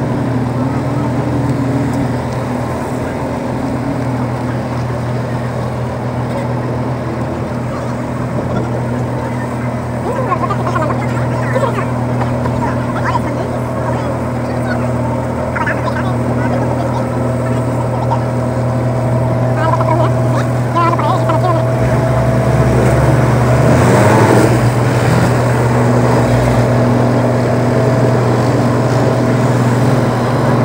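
A river ferry's engine running with a steady low drone, growing a little louder about two-thirds of the way through, with passengers' voices in the background.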